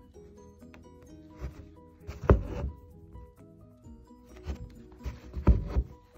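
Background music with steady notes, over which come a few short rasps and thumps of a needle and thread being drawn through fabric stretched taut in an embroidery hoop, the loudest about two seconds in and another near the end.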